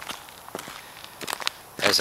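Footsteps on snow: a few short, uneven steps.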